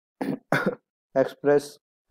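A man's voice in four short bursts: a throat clear, then a few quick spoken sounds.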